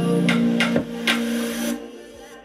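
A song with plucked guitar notes over held bass notes, played through a Tronsmart Element T2 Plus portable Bluetooth speaker at 75% volume; the music dies down near the end.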